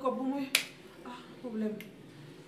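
A woman's voice in short phrases, broken by one sharp snap about half a second in and a fainter click near the end.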